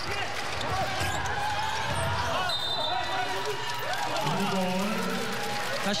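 Live arena sound of a professional basketball game: a basketball bouncing on the hardwood court amid voices in the hall, with a voice calling out more loudly from about four seconds in.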